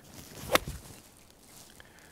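A golf club swung from a fairway bunker: a short swish of the downswing leads into one crisp strike about half a second in, the club taking the ball first and then brushing the sand. It is a clean, solid contact.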